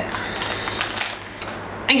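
Thin plastic piping bag crinkling and rustling as gloved hands handle it, a rapid crackle that fades about a second and a half in.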